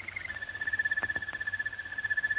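A bird trilling: one long rapid trill that glides down a little in pitch, then holds steady on a high note, with a few faint clicks about a second in.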